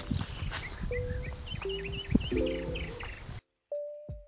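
Birds chirping over open-air field ambience, with background music of slow, held notes and chords. About three and a half seconds in, the outdoor sound cuts out abruptly, leaving only the music.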